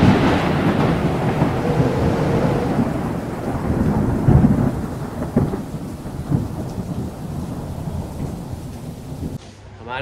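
A heavy rolling rumble like thunder, with a steady rain-like hiss. It follows a loud boom just before and slowly dies away, with a couple of smaller swells midway, before it cuts off near the end.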